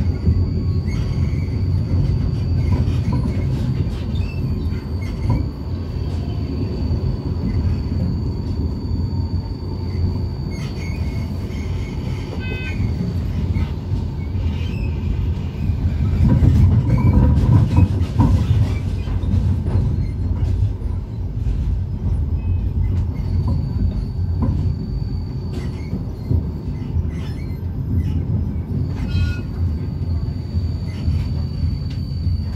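Tram running along street track, heard from inside the car: a steady low rumble of wheels on the rails, with a thin high whine that drops out about halfway and returns near the end. There are scattered clicks and a louder stretch a little past halfway.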